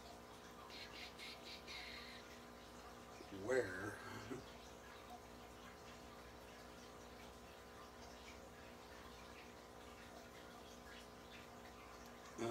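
Faint clicks and rustles of a small plastic action-figure accessory being handled and pushed against the figure, over a steady low hum. A short murmur of the voice about three and a half seconds in is the loudest sound.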